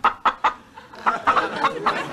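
Short, choppy bursts of studio-audience laughter after a punchline, in a cluster near the start and another in the second half.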